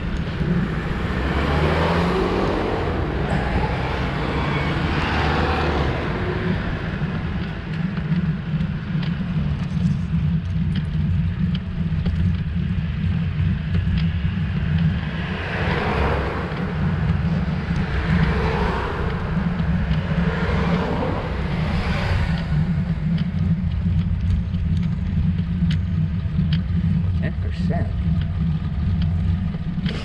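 Steady low wind rumble on the microphone of a road bike in motion, with motor traffic swelling past now and then, most clearly in the first few seconds and again about halfway through.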